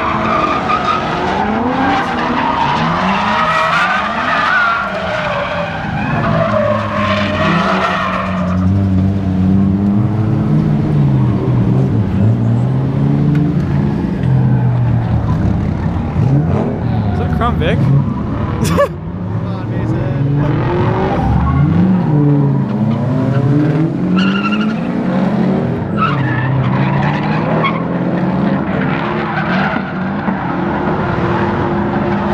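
Drift car engine revving up and down over and over, with tires squealing through the first several seconds. A single sharp crack comes about two-thirds of the way through.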